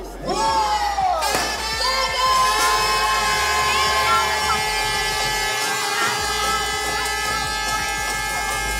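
A big crowd cheering and shouting as a mass marathon start gets under way. From about a second and a half in, several long steady high tones are held together over the cheering.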